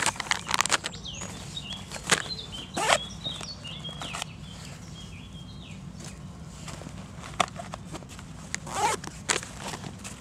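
Gear being unpacked by hand: rustling fabric of a shoulder bag, crinkling of a plastic packet and sharp clicks of items being handled, busiest at the start and again near the end. A small bird chirps in the background through the first half.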